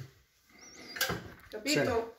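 A single sharp click about a second in, followed by a brief voice.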